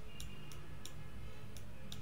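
A few faint, irregularly spaced clicks over a low steady background hum.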